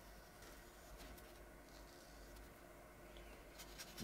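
Near silence: room tone with faint strokes of a watercolour brush on paper, and a few soft ticks near the end.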